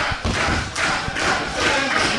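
Irregular soft thumps and knocks from a commentator's microphone being handled and moved close to the mouth.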